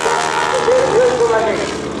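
Stearman biplane's radial engine droning under power as the plane climbs steeply, its steady pitch fading early on, with an airshow announcer's voice over the loudspeakers about half a second in.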